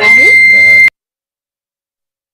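A loud, steady, high electronic beep lasting just under a second over a brief clipped fragment of voice, cutting off suddenly into dead silence: a broadcast audio glitch during a livestream technical fault.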